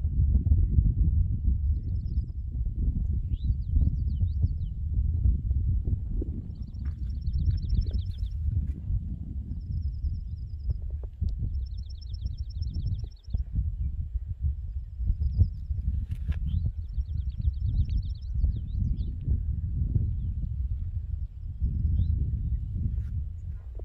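Wind buffeting the microphone with a loud, uneven low rumble, while small songbirds sing over it: short high whistles, quick rising notes and three fast trills of about a second each.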